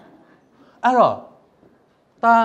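Speech only: a man's amplified voice saying one short word with a falling pitch about a second in, between pauses.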